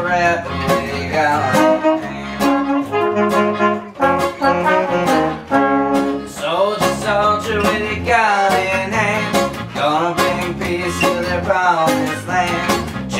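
Instrumental horn break in a ska song: trumpet and trombone playing the melody over strummed acoustic guitars and bass.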